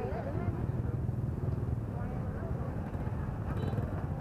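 Many motorbike engines idling together in a packed crowd of waiting riders, a steady low rumble, with people chattering over it.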